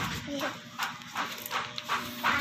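Soft voices talking quietly, with a few brief clicks.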